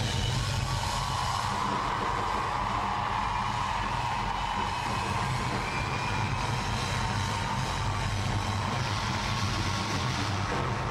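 Live concert sound during a section for two drum kits: a steady, dense roar with a low rumble underneath and no distinct beats.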